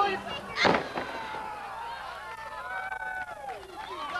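A single loud thud of a wrestler's body landing on the ring mat about half a second in. It is followed by several spectators' voices calling out.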